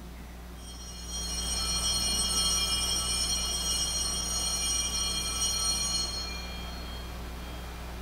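Altar bells rung during the elevation of the chalice at the consecration, a bright shimmering ring of several high tones that holds for about five seconds and then fades away. A steady low hum sits underneath.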